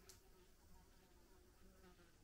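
Faint buzzing of flies in a near-silent room.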